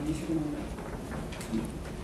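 A man's low murmured hums close to the microphone, short and pitched, mostly in the first half second, with a couple of light clicks about one and a half seconds in.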